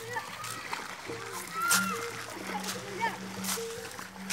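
Splashes of water in a shallow stream as people wade through it, the loudest a little under two seconds in, over music with held low notes and voices.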